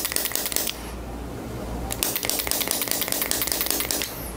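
Rapid runs of fine crackling clicks from hands rubbing and working over a bare foot: one run at the start that stops about half a second in, then another from about two seconds in.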